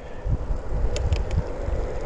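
Wind buffeting the microphone while riding, over the hiss of a Decathlon Triban Gravel 120's tyres on wet asphalt, with a few faint ticks about a second in.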